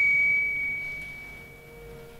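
A steady, high-pitched whistling tone from public-address feedback in the lecture hall's sound system, holding one pitch and fading away over about a second and a half.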